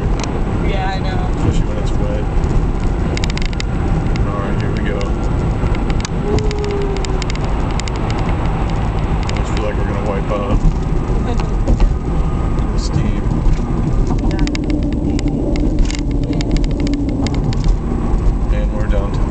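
A car's tyres running over a steel-grate bridge deck, heard from inside the cabin as a steady loud rumble over the engine and road noise, with a faint hum that comes and goes.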